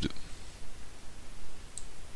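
A single computer mouse click about three-quarters of the way through, short and high-pitched, over faint low room noise.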